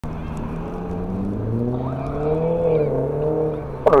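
A motor vehicle engine running close by, its note climbing slowly and then easing back down. A man's voice starts right at the end.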